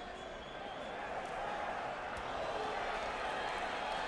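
Low, steady hum of a boxing-arena crowd from the fight broadcast, a blur of many voices with no single voice standing out, slowly growing a little louder.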